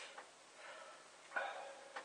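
A man breathing hard through the burn of a super-hot chili: a soft breath about half a second in, then a sharper, louder exhale at about one and a half seconds.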